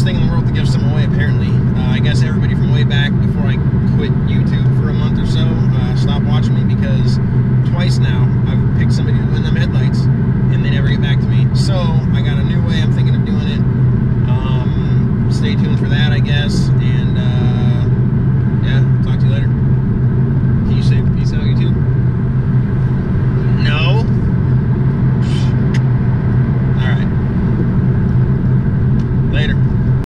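Steady road and engine drone inside the cabin of a 2017 Honda Civic EX-T, its 1.5-litre turbo four cruising at highway speed, with voices heard on and off over it.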